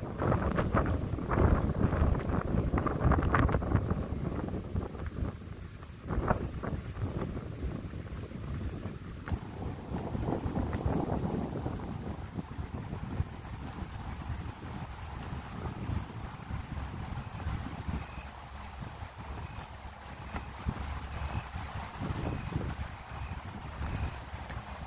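Strong wind buffeting the phone's microphone in uneven gusts, a low rumbling noise that is heaviest in the first few seconds and eases after that.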